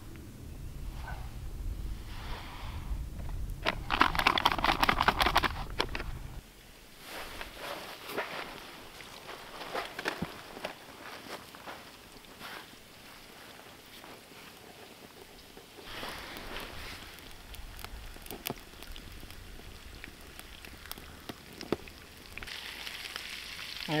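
Breaded crappie fillets frying in vegetable oil in a pan over a campfire. A loud burst of sizzling flares about four seconds in, then the frying goes on quieter with scattered crackles and pops, growing louder again near the end.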